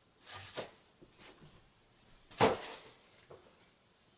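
Handling noise: a few light knocks and clicks of small objects being moved, the loudest about two and a half seconds in.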